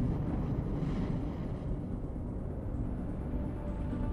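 A low, steady rumble: a volcanic eruption sound effect in a documentary soundtrack.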